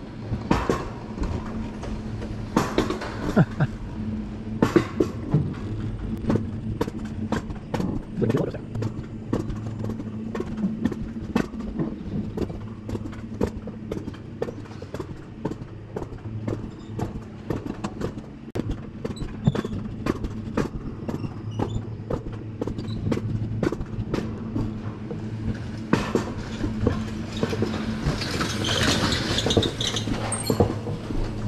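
Mountain coaster cart running unbraked down its steel rails: a steady rolling hum from the wheels, with frequent clicks and clacks from the track. A rushing noise builds near the end as the cart picks up speed.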